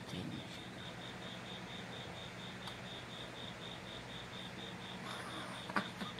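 Faint, evenly pulsed high-pitched chirping, about five pulses a second, like an insect's, over a low steady room hum. A small click comes near the end.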